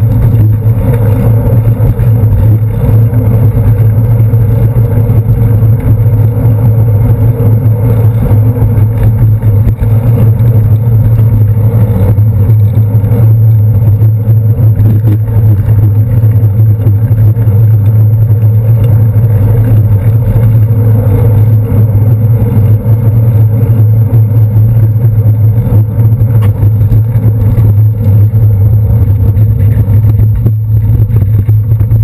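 Steady low rumble of a bicycle rolling over city pavement, picked up through a handlebar-mounted GoPro Hero 2, with the noise of buses and cars in street traffic around it.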